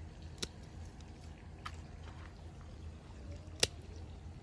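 Hand pruning shears snipping through juniper branches: a few short, sharp cuts, the loudest near the end.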